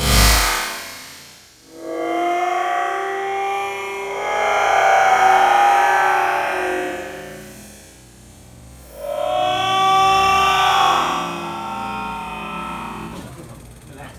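Slowed-down audio of a soldier being hit with a Taser: a sudden loud burst at the start, then two long, slowly wavering cries a few seconds apart, his voice stretched and lowered by the slow-motion playback.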